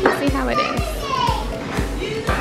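Background music with a steady beat of about two beats a second, and a high voice over it.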